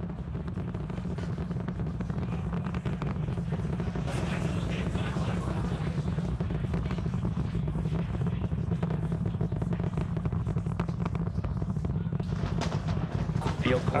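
Distant sound of Starship's Super Heavy booster climbing on its 33 Raptor engines: a steady deep rumble laced with rapid crackling.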